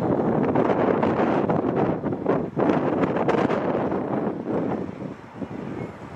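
Wind buffeting the microphone, a loud rough rumble that eases off near the end.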